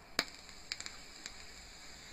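A few faint clicks, the sharpest about a fifth of a second in, over a steady low hiss.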